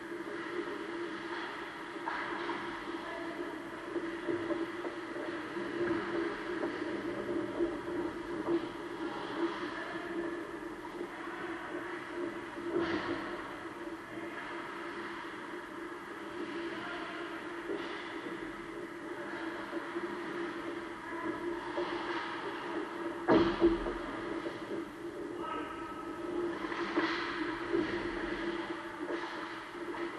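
Ice hockey game ambience in an arena: a steady low hum under scattered scrapes and clacks of skates and sticks on the ice, with players' voices calling out now and then. One sharp knock about 23 seconds in is the loudest sound.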